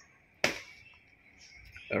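Quiet outdoor background with a faint steady high-pitched sound, broken by one short sharp noise about half a second in that quickly fades; a man's voice begins at the very end.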